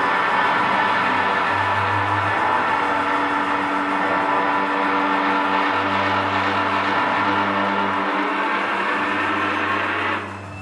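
Live rock band of electric guitar and drums: the guitar holds long ringing chords over a dense wash of sound, with low notes shifting every second or two. The sound cuts off suddenly at the very end as the song finishes.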